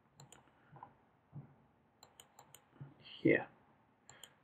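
Computer mouse clicks: a sharp pair about a third of a second in and a quick run of three about two seconds in. A brief vocal sound near the end is the loudest thing.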